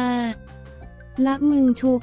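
Speech only: a narrator reads Thai news text over a soft background music bed. The voice draws out a vowel at the start, pauses for about a second, then goes on.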